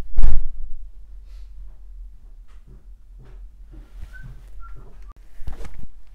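Handling thumps and knocks from the recording camera being moved and reframed. A heavy thump comes just after the start, lighter knocks follow, and a second cluster of thumps comes near the end.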